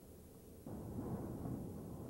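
Hurricane wind gusting and buffeting a camcorder microphone as a low rumble. It starts abruptly under a second in, after faint background noise.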